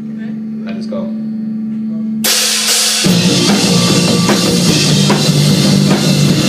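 A single amplified note held steady for about two seconds, then drums and cymbals crash in and a live punk rock band starts playing loudly, with drum kit, bass and guitars.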